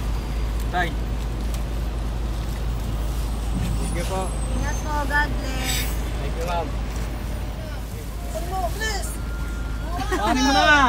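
Steady low rumble of idling traffic engines, including a bus alongside, heard through an open car window, with a brief hiss about six seconds in.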